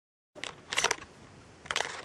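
Dead silence at first, then a few short scratchy, clicking handling noises over faint room hiss, the loudest just under a second in and another near the end.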